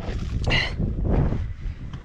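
Wind buffeting the microphone, a low, uneven rumble, with a brief hiss about half a second in.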